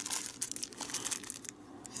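Thin plastic wrapping crinkling as it is handled and unwrapped by hand, a string of small irregular crackles that thins out about one and a half seconds in.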